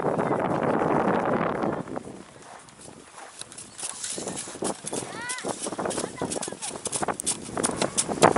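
Footsteps crunching on hard-packed snow, a run of short irregular crunches through the second half, after a rush of noise in the first two seconds. Voices in the background, including a brief high-pitched call about five seconds in.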